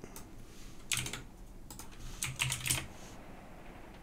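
Computer keyboard being typed on: a few sharp key clicks in short, irregular clusters, as a terminal command is keyed in.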